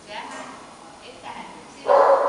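Dog barking and yipping: a few short, quieter yips, then a sudden loud bark near the end.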